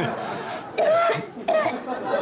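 A person coughing and gasping for breath in short fits, about a second in and again shortly after.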